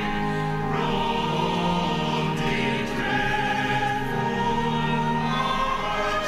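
Church choir singing a hymn in long, held notes that change pitch every second or two.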